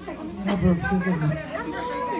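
Several people talking over one another: party chatter.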